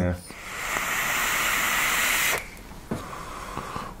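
A long draw on an electronic cigarette (vape mod): a steady hiss of air pulled through the atomiser as it fires, lasting about two seconds and stopping abruptly.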